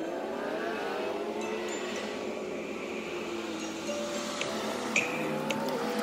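A car engine accelerating along the road, rising in pitch over the first second. Background music runs over it, with held notes and a few chiming hits near the end.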